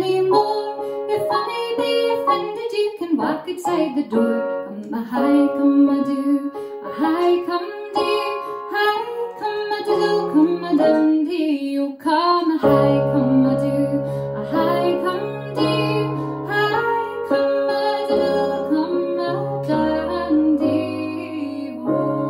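A woman singing a song while accompanying herself on a Roland electronic keyboard, the melody carried over held chords. About halfway through, deeper bass notes come in beneath the chords.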